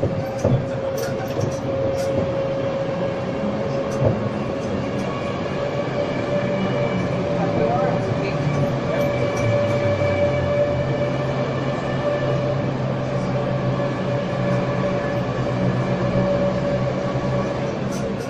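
Dotto tourist road train riding along a city street: a steady low drone from its tractor unit with a constant whine above it, over road noise.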